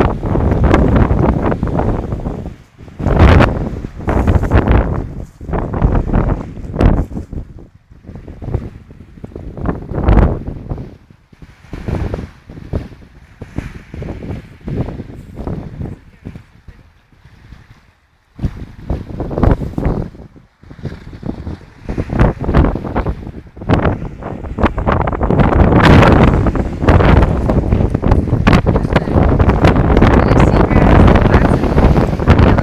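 Wind buffeting the microphone in loud, uneven gusts, with a brief lull past the middle and the strongest gusts near the end, over waves washing onto a pebble beach.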